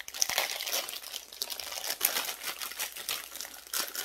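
Thin plastic packaging crinkling and crackling as it is pulled open, held in the teeth at first, then handled.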